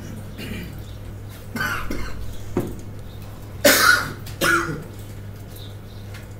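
A person coughing three times: one cough about a second and a half in, then two louder coughs close together around the four-second mark, over a steady low hum.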